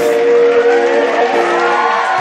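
A live Latin band holding a sustained chord with the drums dropped out, and voices from the stage or crowd whooping over it.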